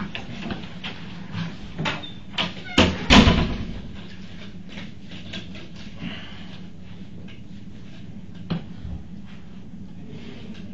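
A room door pulled shut about three seconds in: a sharp latch click, then a heavy thud, the loudest sound here. It follows a few lighter clicks and knocks, and is followed by a steady low room hum with one faint click near the end.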